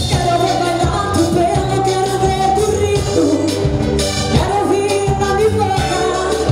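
Live pop song: a woman singing held, gliding lines into a microphone over a band of keyboard, drum kit and electric guitar, with a steady beat.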